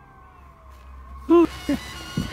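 Short, loud vocal cries, each rising then falling in pitch: one loud cry a little over a second in and a weaker one just after it, over faint, slowly falling tones.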